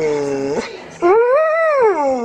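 Pit bull-type dog howling: one drawn-out howl ends about half a second in, and after a short break a second howl rises and then falls in pitch.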